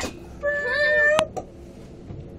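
A young person's high-pitched, wavering squeal lasting under a second, ending in a sharp click.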